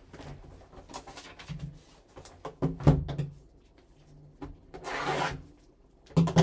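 Gloved hands handling a sealed cardboard trading-card box on a tabletop, with rubbing and sliding. There is a sharp knock about three seconds in as the box is turned over and set down, and a brief rustling scrape near the end.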